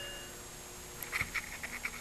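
A car's dashboard chime fading away as the ignition comes on, followed by a few faint, irregular light ticks.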